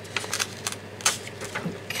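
A quick, irregular run of light clicks and taps, about a dozen in two seconds.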